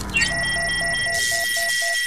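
Synthesized electronic sound effect: a steady high tone starts about a quarter second in, under a lower beep pulsing about four times a second.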